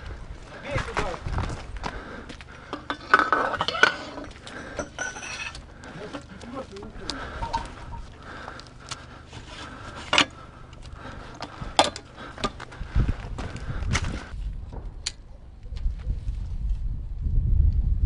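Repeated sharp metallic clicks and knocks from a mounted weapon being handled, with muffled voices in between.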